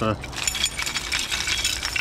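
A tangled clump of pike lures with treble hooks and metal clips rattling and clinking rapidly as it is lifted and shaken to free one lure.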